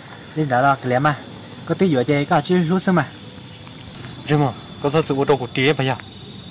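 A steady, high-pitched insect drone that holds one tone throughout, with men's voices talking over it.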